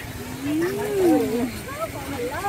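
A drawn-out vocal call that rises and then falls in pitch over about a second, followed by a few shorter wavering notes.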